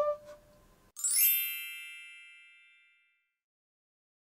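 A held saxophone note cuts off at the very start. About a second in, a single bright chime sounds, an edited-in transition sound effect with a quick upward shimmer, and rings out over about a second.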